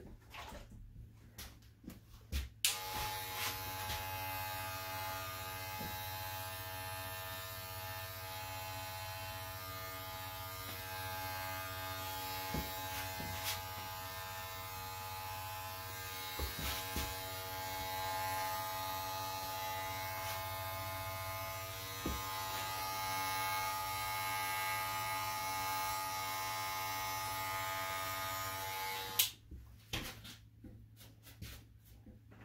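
Electric hair clipper switched on about three seconds in, running with a steady buzz, and switched off just before the end.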